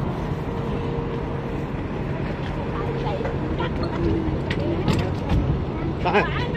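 A parked tour bus's engine idling with a steady low rumble while people talk over it, and a few short knocks in the second half.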